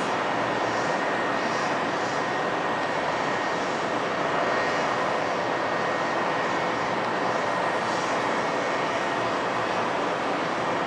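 Steady, even roar of city noise heard from high above the street, with a thin high whine running through it.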